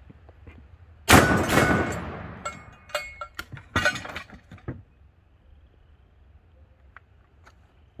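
A quick double tap from a semi-automatic 12-gauge shotgun: two shots less than half a second apart about a second in, with a long fading echo. Several sharp clanks and knocks follow over the next few seconds as the close-range steel target is hit and knocked down.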